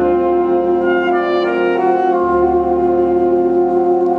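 High school jazz big band playing a slow ballad that features the lead alto saxophone, over saxophones, brass, piano and bass. A few moving notes give way, about two seconds in, to a long held chord.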